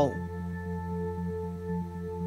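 Binaural-beat background track: a steady drone of several sustained pure tones layered at different pitches, with a faint fine pulsing.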